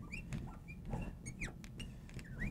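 Marker squeaking on a glass lightboard in a string of faint short chirps, the sound of writing letters stroke by stroke.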